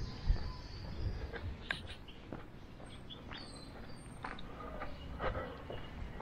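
Footsteps of a person walking on a concrete street, with birds chirping faintly in the background.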